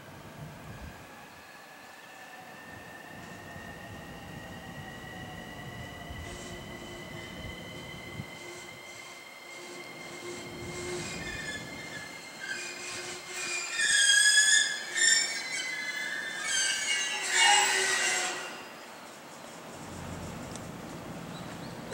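JR East E231 series electric commuter train pulling in and braking to a stop. A high whine rises slightly as it approaches, then loud high-pitched brake and wheel screeching starts about halfway through and dies away just before the end as the train halts.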